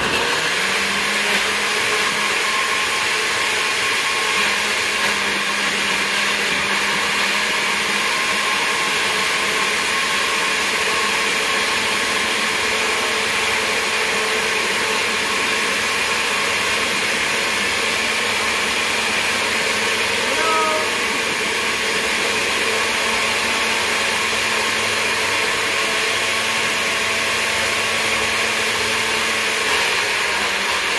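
Countertop blender running at a steady speed, chopping whole Scotch bonnet peppers in vinegar down to a puree. It starts suddenly, and its level dips briefly about twenty seconds in.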